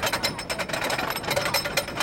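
Wooden roller coaster train climbing the lift hill, with the lift chain and anti-rollback ratchet clacking in a rapid, even rattle.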